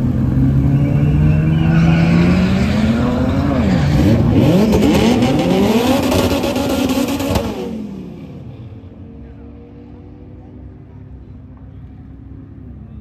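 Two cars making a drag race run, one of them a Toyota GR Supra (MKV). Their engines rev hard at full throttle, rising in pitch and dropping back at each gear change. About eight seconds in the sound falls away quickly as the cars pull off down the track, leaving a faint distant engine.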